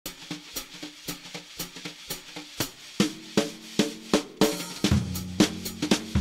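Jazz drum kit played in a recording studio: crisp strokes about twice a second on snare and cymbals with bass drum accents. From about halfway through, heavier hits with a low ringing pitch come in.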